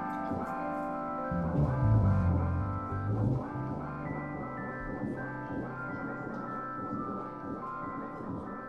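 Live instrumental band music: sustained electric guitar and keyboard notes over low bass notes, which are loudest between about one and three seconds in.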